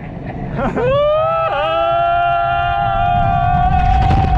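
A roller-coaster rider's long scream, rising about a second in and then held at one pitch, over the low rumble of wind and the coaster running on its track.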